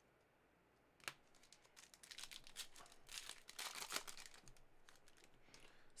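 Trading-card pack wrapper being torn open and crinkled by hand: a single sharp click about a second in, then a run of faint crackling and rustling that is busiest in the middle and fades near the end.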